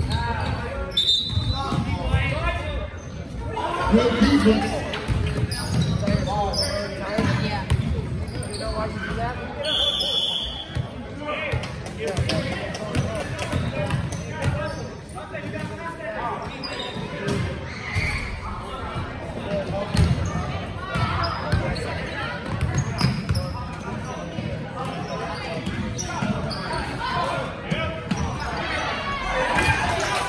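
A basketball bouncing on a hardwood gym floor during a game, with players' and spectators' voices throughout, echoing in a large gym.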